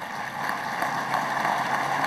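Audience applause building up and going on steadily, a dense patter of many hands clapping.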